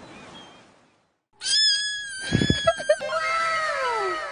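Ocean surf noise fades out into a brief silence. Then a loud cat scream sound effect, one long high cry held steady for about a second and a half, is followed by a series of overlapping falling whistle-like tones.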